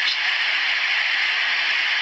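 Steady rushing of fast-flowing floodwater: an even, unbroken hiss.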